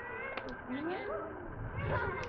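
A young child's voice, whiny and wordless, its pitch sliding up and down a few times, over faint background hum.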